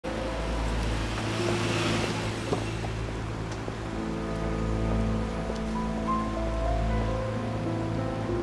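Drama background music with slow, sustained held notes. In the first couple of seconds a passing car's tyre-and-air rush swells and fades under it.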